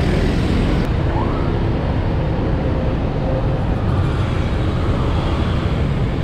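Steady road traffic noise heard from within a busy city street: motorbike and car engines and a city bus running close by, with no break.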